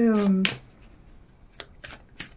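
A speaking voice trailing off in the first half second, then a quiet pause broken by a few faint short clicks.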